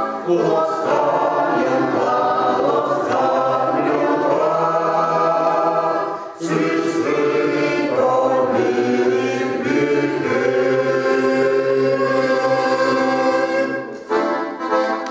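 A small mixed choir of women's and men's voices singing a folk song together in harmony, with held notes and a brief pause between phrases about six seconds in.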